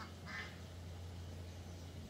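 A single short call from backyard fowl about a third of a second in, over a steady low hum.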